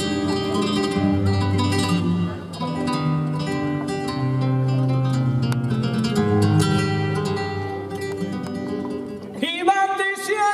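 Flamenco guitar playing a fandango passage of plucked notes and chords. Near the end a male flamenco singer comes in on a long held note.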